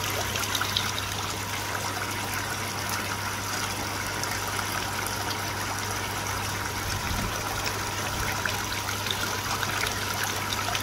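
Water trickling steadily into a koi pond, with a low steady hum underneath.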